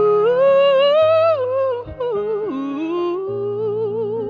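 A woman singing long sustained notes with vibrato over electronic keyboard chords. A long held note swells and breaks off just before two seconds in, then a second phrase starts lower and climbs, wavering near the end.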